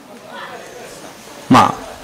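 A pause with faint room noise, then about one and a half seconds in a short, loud vocal sound from a man, falling in pitch, as he starts to speak again.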